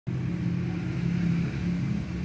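A motor running steadily nearby: a continuous low hum.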